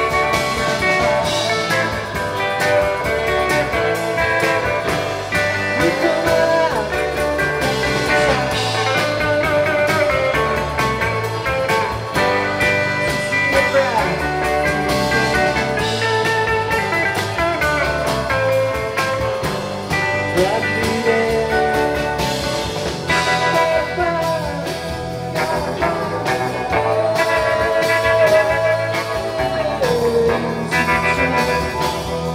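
Live psychedelic rock band playing, with electric guitar lines, some bent, over organ, bass and drums.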